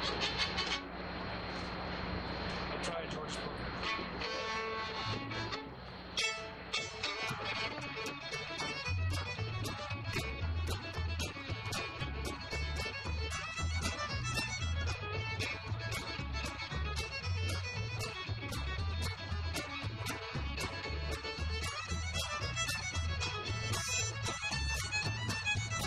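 Old-time fiddle tune played on fiddle with two acoustic guitars and an upright bass. About six seconds in, the band's steady strummed beat and walking bass come in under the fiddle.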